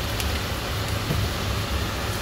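Chopped onions frying in oil in a pot, a steady sizzle over a low steady rumble, being cooked until light pink before the garlic goes in.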